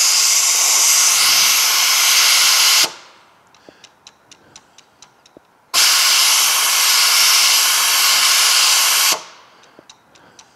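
A compressed-air nozzle blowing into the hydraulic passage of a Honda e-Drive transaxle's multi-plate overdrive clutch, applying the clutch as oil pressure would. It comes as two loud, steady hissing blasts: the first cuts off about three seconds in, and the second runs from about six to nine seconds in. Between the blasts, faint light ticks sound a few times a second.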